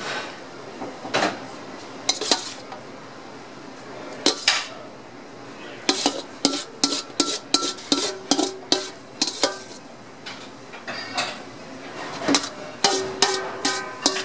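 Stainless steel mixing bowl clinking and scraping against a ceramic serving bowl as dressed salad is tipped and pushed out of it. Scattered knocks at first, then a quick run of clinks with a ringing metal note from about six seconds in, and another run near the end.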